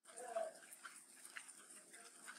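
A dog whimpers briefly about a quarter second in, a short high whine that rises and falls, over faint steady background hiss.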